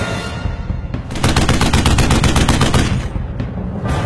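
Soundtrack music with a burst of rapid machine-gun fire sound effect laid over it, starting about a second in and cutting off suddenly near the end.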